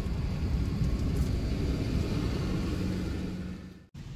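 Cargo van's engine and road noise heard from inside the cab while driving: a steady low rumble that fades out just before the end.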